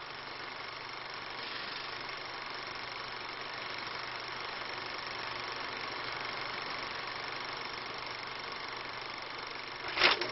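Steady background hiss with a faint low hum, unbroken and fairly quiet.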